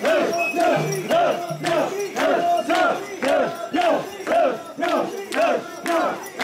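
A crowd of mikoshi bearers shouting a rhythmic carrying chant in unison, about two calls a second, as they shoulder the shrine's portable shrine.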